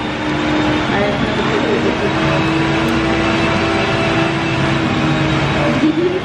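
Busy restaurant room sound: indistinct voices chattering over a steady low hum.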